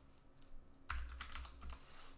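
Computer keyboard typing: a few separate, faint keystrokes.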